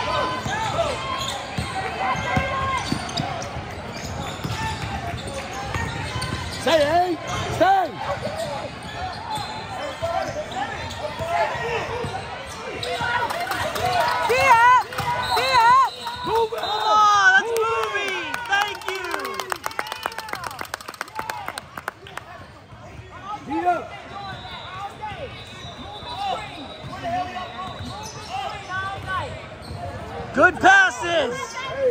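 Basketball being dribbled and sneakers squeaking on a hardwood court, with spectators' voices and shouts echoing in a large gym. The squeaks come thickest about halfway through.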